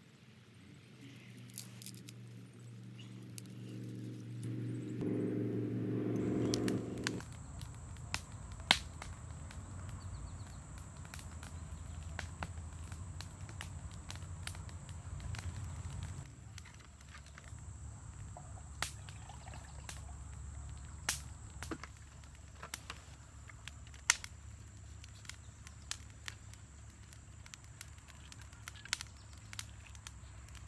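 A small campfire of wood kindling catching and crackling, with scattered snaps and one sharp snap about nine seconds in. A low hum lasts a couple of seconds about five seconds in, and a faint steady high-pitched whine runs from about seven seconds on.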